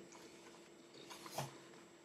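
Faint paper rustling of a hardcover picture book's pages being turned, with a short page flick about one and a half seconds in.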